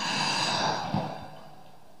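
A Quran reciter's deep in-breath into a close-held microphone between recited phrases, swelling and then fading out about one and a half seconds in, with a short click about a second in.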